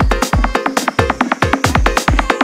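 Indonesian 'jedag jedug' full-bass DJ remix: a fast electronic dance beat with busy percussion several strokes a second and heavy bass hits about twice a second that slide down in pitch.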